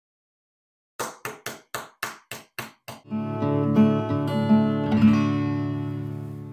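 Acoustic guitar music. About a second in, a run of quick, evenly spaced strums begins, about four a second; from about three seconds in, sustained chords ring out and slowly fade.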